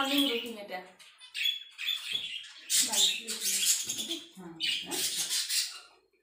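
A high-pitched voice in short phrases without clear words, with a brief rustle of cloth about a second and a half in.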